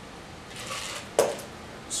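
A brief splash as the last of the strained drink runs into the glass, then a metal cocktail shaker tin set down on the bar with one sharp knock a little over a second in, and a light click near the end.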